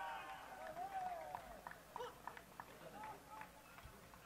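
Faint, scattered shouts and calls from players on a football pitch celebrating a goal, with a few short sharp sounds in between.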